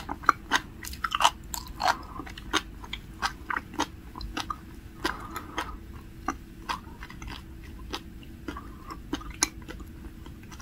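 Sea grapes being chewed close to the microphone: a rapid, irregular stream of sharp little pops and clicks as the seaweed's beads burst in the mouth, thinning out somewhat in the later seconds.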